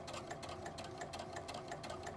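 Sewing machine stitching a rolled hem through a narrow hemming foot, running steadily, with a rapid, even ticking of the needle strokes.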